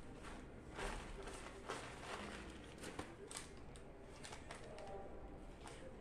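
A plastic shopping bag rustling and crinkling in a series of irregular crackles as hands rummage inside it for a receipt.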